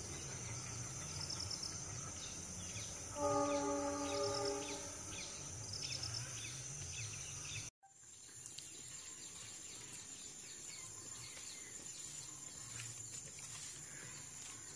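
Rural outdoor ambience: a steady high-pitched insect drone with scattered small bird chirps. About three seconds in, a single steady pitched call or tone sounds for about a second and a half, the loudest thing here. Near eight seconds the sound cuts out for a moment, then similar insect-and-bird ambience resumes.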